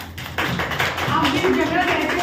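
Rapid tapping starts about half a second in, mixed with children's voices.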